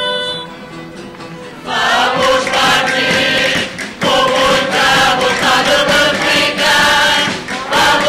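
A solo female voice ends a held note. About two seconds in, a mixed chorus with guitars comes in, singing a Terceira carnival bailinho together, with brief pauses between phrases.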